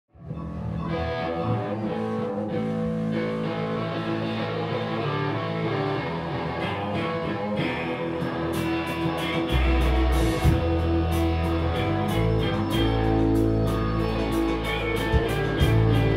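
Live rock band playing a song intro: electric guitars play alone at first. About halfway, steady cymbal strokes come in and a deep bass guitar line joins, filling out the sound.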